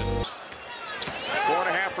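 Background music cuts off sharply just after the start, giving way to college basketball broadcast sound: a commentator's voice over court noise, with a couple of sharp knocks.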